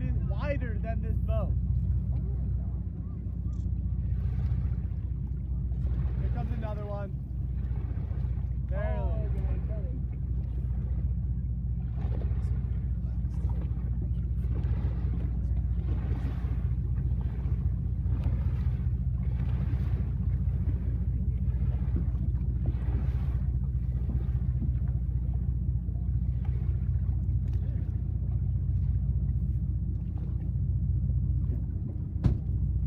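Tour boat's engine running with a steady low hum, with passengers' voices chattering over it.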